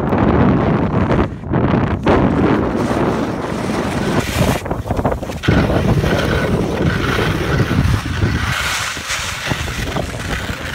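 Wind buffeting a handheld camera's microphone while skiing downhill, a loud, gusting rumble with a few brief lulls.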